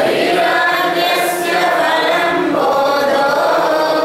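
Vocal music: voices singing a slow chant in long held notes that step from pitch to pitch.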